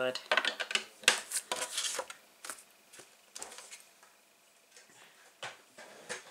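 Paper being handled on a plastic scoring board: quick rustles and light clicks, busiest over the first two seconds, then a few scattered ticks.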